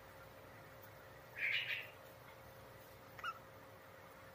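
Budgerigar calling: a short chirping call about one and a half seconds in, then a single brief chirp near the end, over a faint steady hum.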